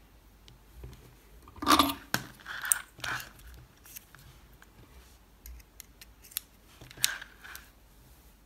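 Handling of an electric nail drill while it is switched off: a ceramic bit is pushed into the metal handpiece and the coiled cord is moved, making a few short clicks and knocks. The loudest cluster comes just under two seconds in, with more around three seconds and a sharp click near seven seconds.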